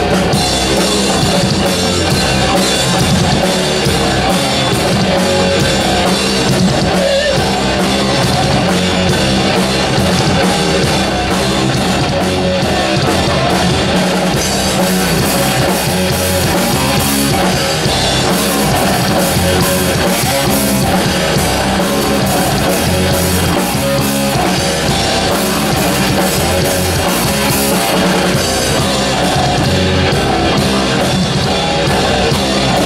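A metal band playing live, loud and without a break: electric guitars and bass over a pounding drum kit.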